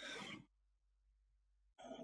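A man's short breath, lasting under half a second, followed by near silence.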